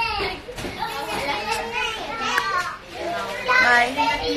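Children's voices talking and playing, with high-pitched chatter throughout.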